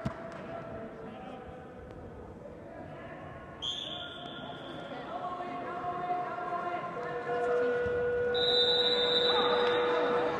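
Coaches and spectators calling out in a reverberant gymnasium during a wrestling bout. The voices grow louder over the last few seconds as one wrestler shoots in low for a takedown, and there are two steady high-pitched tones.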